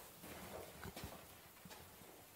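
Faint footsteps on a hard, debris-strewn floor, with a few short knocks and scuffs around the middle.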